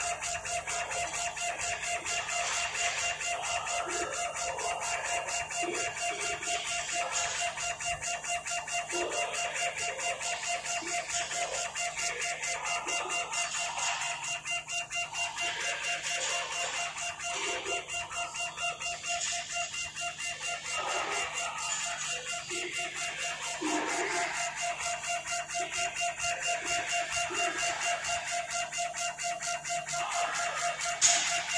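CO2 laser engraving machine at work: its stepper motors drive the laser head back and forth in a raster engrave. They give a steady whine with fast pulsing, and short pitched notes come irregularly as the head's motion changes.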